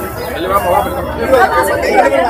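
Several people talking at once in a crowd: overlapping chatter with no single clear voice.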